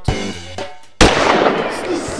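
Drum-led music ending, then about a second in a single sudden loud bang, the starting shot of a running race, followed by crowd noise as the field sets off.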